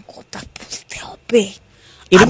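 Quiet, whispered speech with one short voiced syllable about one and a half seconds in.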